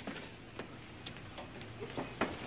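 A few faint, irregularly spaced clicks or ticks over low room noise.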